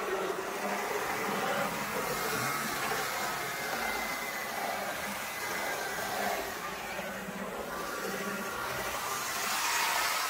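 HO-scale dual-motor GG1 model electric locomotive running fast on the track: a steady whir of its motors and gear towers with the rattle of its wheels on the rails, a little louder near the end as it passes close. Both motors are running freely, the formerly seized gear tower cleared of its hardened old grease.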